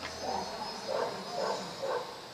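A dog barking, four short barks about half a second apart.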